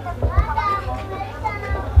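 Children's voices and chatter from a watching crowd, over a steady low electrical hum.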